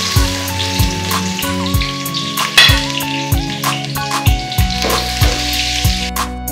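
Food sizzling on a gas stove, a steady hiss, under background music with sustained notes and a regular drum beat.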